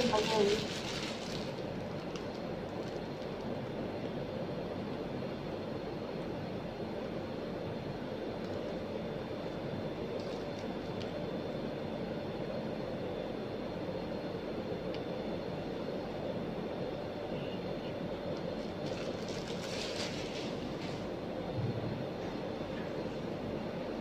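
A steady mechanical hum of running room equipment, with a few faint tones in it. Soft crinkles of a plastic piping bag come near the start and again a few seconds before the end, as cream is squeezed out.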